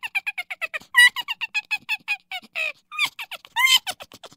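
Rapid string of short, high-pitched squeaky chirps, about seven a second, each dropping in pitch, with a brief pause and a longer chirp near the end.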